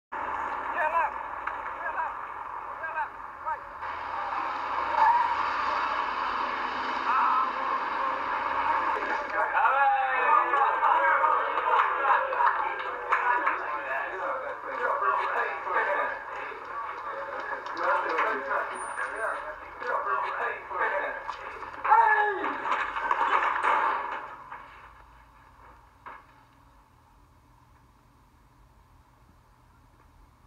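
Indistinct, muffled voices with no clear words, heard through a narrow-band old film soundtrack. They fade to near silence about five seconds before the end.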